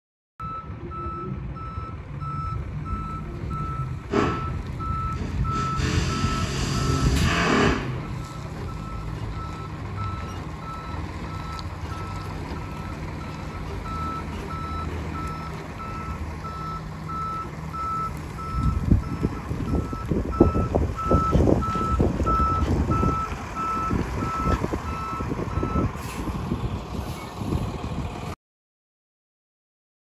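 A box truck's reverse alarm beeping steadily at one pitch while it backs up, over the low, continuous running of its engine. A brief rushing burst comes about four seconds in and again a few seconds later. The last third has louder, uneven low rumbling, and the beeping stops about two seconds before the end.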